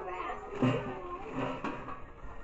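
People talking quietly in the background, voices coming and going, with no single clear speaker.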